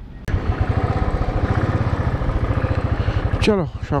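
Royal Enfield Thunderbird's single-cylinder engine running with an even, rapid thump as the motorcycle pulls away from a standstill. A short click comes just before the engine sound rises.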